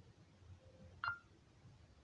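A single short beep from an Alcatel Raven A574BL smartphone, its touch-feedback tone as the screen is tapped, about a second in.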